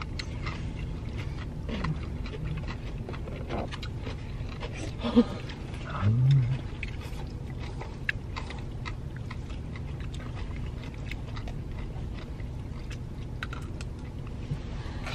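Noodles being eaten with chopsticks inside a car: chewing and slurping with small clicks of chopsticks against foam bowls, over a low steady cabin rumble. About six seconds in, a person gives a short low 'mm'.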